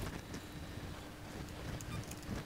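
Faint plastic clicks and handling knocks as the battery cover of a toy RC car's plastic pistol-grip remote is put back on, over a low steady hum.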